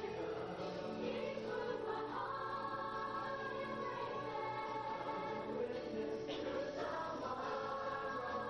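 Youth choir singing together in long held notes, moving to new chords about two seconds in and again near the end.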